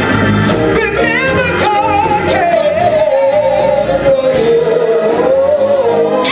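A woman's solo gospel singing into a microphone over live church accompaniment, holding one long note with vibrato from about two seconds in until near the end.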